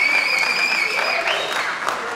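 Audience applauding, with one long high-pitched call from a listener held over the clapping for about the first second.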